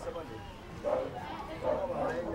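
Indistinct voices in the background, with two short calls, one about a second in and one near the end.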